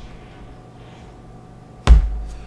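Chromebook lid being shut onto its base: one sharp, loud thump near the end, after quiet room tone.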